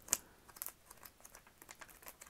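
Pages of a thick, well-used paper planner being flipped by hand: faint, quick papery flicks and crinkles, with a slightly sharper flick just after the start.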